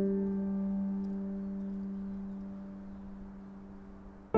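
Background piano music: a single held chord slowly fades away.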